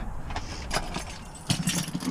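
Keys jangling with a few sharp clicks and rattles inside a pickup truck's cab, as the keys are handled before starting the engine.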